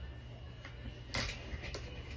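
A short sniff about a second in, as a blindfolded man smells something held under his nose, over a low steady hum.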